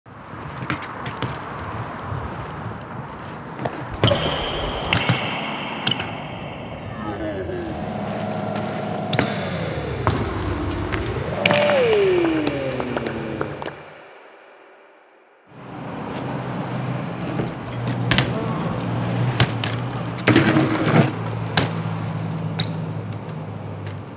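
BMX bike riding on street pavement: tyres rolling on asphalt and paving with sharp clacks and knocks from landings and impacts, in two takes split by a short drop to near quiet about fourteen seconds in. A pitched tone glides up and down near the middle, and a steady low hum runs under the second take.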